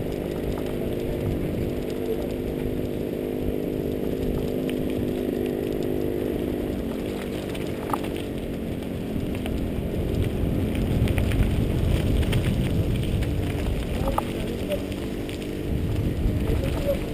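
Wind and rolling tyre noise from a mountain bike riding a rough track, as picked up by a camera on the bike. A steady motor drone runs under it and fades about seven seconds in. The low rumble gets louder from about ten seconds in as the bike picks up speed downhill.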